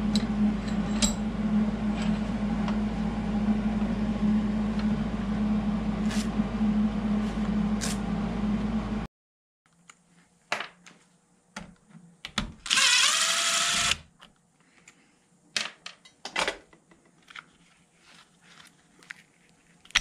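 A loud, steady machine hum with a low drone runs until it cuts off abruptly about nine seconds in. After that come quiet scattered clicks and knocks of tools and parts being handled, and a cordless drill spinning up briefly a little after halfway.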